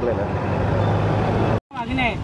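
Road traffic: a heavy vehicle's engine running close by, a steady low drone that cuts off suddenly near the end.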